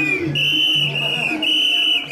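A whistle blown in short, high, steady blasts, about two a second, keeping the rhythm for mikoshi bearers as they carry the shrine. The bearers' voices chant underneath.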